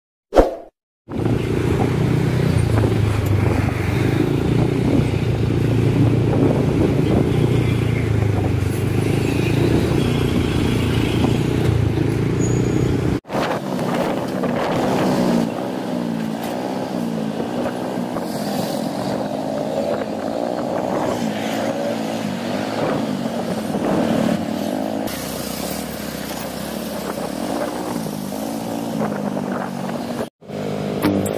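Riding a motorcycle in city traffic, heard from the rider's seat: the engine runs steadily under road noise. After a cut about 13 seconds in, the engine's pitch rises and falls over and over with the stop-and-go speed. A short swish comes right at the start, followed by a moment of silence.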